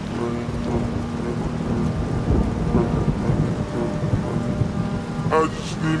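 Rain and thunder in a slowed-down hip-hop mix: a hiss of rain with low rumbling, under a held chord that fades out after about two seconds. A slowed voice comes in near the end.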